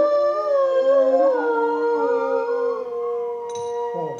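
Carnatic music accompanying a classical Indian dance: a long held melodic note that slides and wavers before settling into a steady tone over a drone. A few bright metallic strokes come in near the end.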